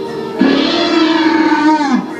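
Recorded Velociraptor call from the raptor figure's sound system: one long pitched call that starts about half a second in and drops in pitch at the end.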